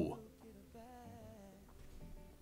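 A quiet singing voice holding a slow, wavering melody.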